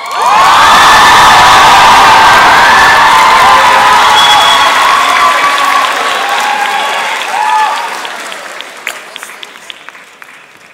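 Audience applause and cheering with shouts and whoops, starting suddenly and loud, then tapering off over the last few seconds.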